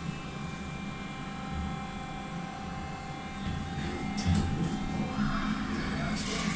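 Steady electric hum of a passenger lift, with a few thin steady tones over it. A rustle of louder noise and a few clicks come in over the last couple of seconds.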